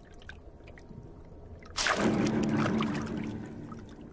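A sudden gulping rush of water about two seconds in, fading over a second or so: an alligator snapping turtle's jaws snapping shut on a fish underwater.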